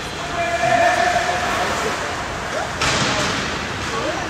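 Youth ice hockey game sounds heard from behind the rink glass: skates and sticks on the ice under arena chatter. A long held pitched call rings out for about a second near the start, and a sharp hit sounds near three seconds in.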